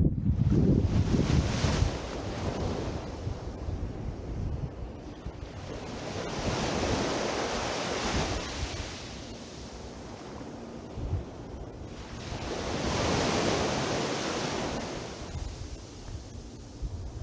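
Small ocean waves breaking and washing up a sandy shore, the wash swelling and fading about every six seconds. Wind rumbles on the microphone in the first couple of seconds.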